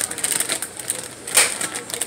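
Irregular clicks and taps of something being handled, the loudest about one and a half seconds in.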